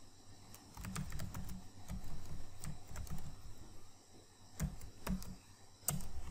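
Computer keyboard being typed on in irregular runs of keystrokes, with a short lull about four seconds in.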